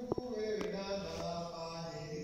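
A priest's voice chanting a liturgical prayer on long, held notes. There is a brief sharp click just after it starts.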